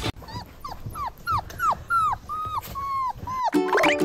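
A dog whining in a quick series of about ten short calls, each falling in pitch, roughly three a second. Music starts near the end.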